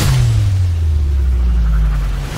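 A deep rumbling sound-design drone of the kind used in film trailers, starting at once and sliding slowly down in pitch.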